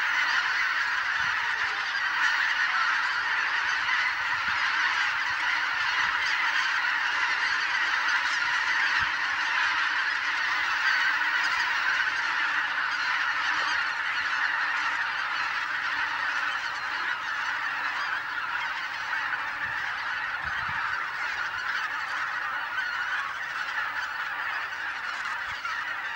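A huge flock of wild geese calling together, a dense unbroken honking chorus from thousands of birds, part of the flock flushed and circling overhead. The chorus eases slightly near the end.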